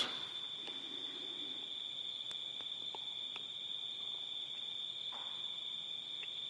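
A steady, high-pitched insect trill, with a few faint clicks.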